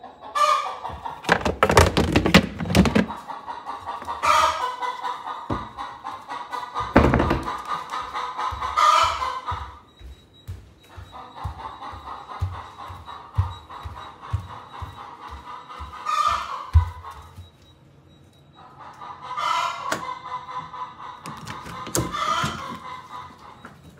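Chickens calling loudly several times, about five calls spread through the stretch. Beneath them come low thumps and a run of steady footsteps on a wooden floor.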